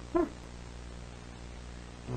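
One brief pitched vocal sound with a slight rise just after the start, then a steady low hum and hiss.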